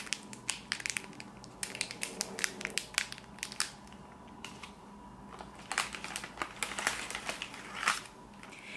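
Crinkling and crackling of a foil packet of modelling clay and clear plastic packaging being handled. The crackles come in dense runs, ease off briefly just past the middle, then pick up again.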